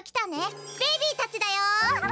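Squeaky, very high-pitched cartoon character calls with no words: short sliding chirps, then one longer call that rises and falls. A light children's-music jingle plays underneath.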